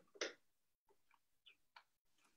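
Faint, irregular clicks from someone working at a computer, about six in all, the loudest a short way in, against near-silent room tone.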